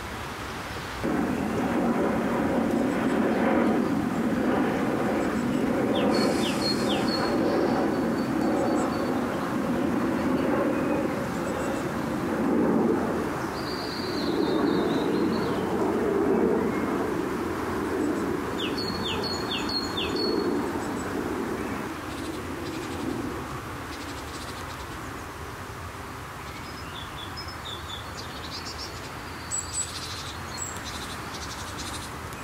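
Small songbirds singing short high phrases, each with a few quick falling notes, four times. Under them a steady low rumble starts about a second in and fades out after about twenty seconds.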